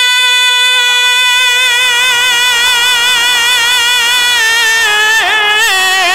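A male reciter sings one long held note of a manqabat on the drawn-out word "Ali". The note stays steady for about four seconds, then breaks into quick wavering ornaments near the end.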